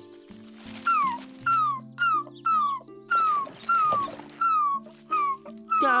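A frightened puppy whimpering: a run of short high whines, about two a second, each sliding down in pitch. Soft background music holds low notes underneath.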